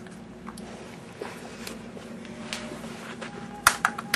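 Plastic stacking cups knocking together in a baby's hands: a few soft clicks, then two sharp clacks near the end.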